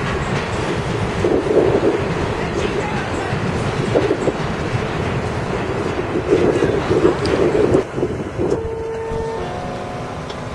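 New York City subway train running along an elevated track, its wheels clattering over rail joints in recurring bursts over a steady rumble. Near the end the clatter drops away and a few steady tones take over.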